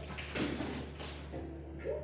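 Soundtrack of a children's TV programme playing from a television: a short, sudden noisy burst about half a second in, then pitched sounds near the end, over a steady low hum.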